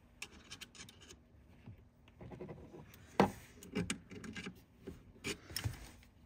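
Faint metal-on-metal scraping and clicking as a loose Torx bit is turned with pliers to break a small mounting bolt free, with one sharper click about three seconds in.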